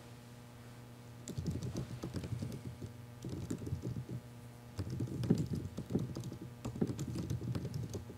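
Typing on a laptop keyboard: quick runs of key clicks starting about a second in, broken by short pauses, over a faint steady electrical hum.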